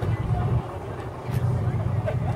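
Ford F-150 pickup engine running at low revs, a steady pulsing low rumble, as the truck rolls down off a crushed car. Faint voices of onlookers are heard over it.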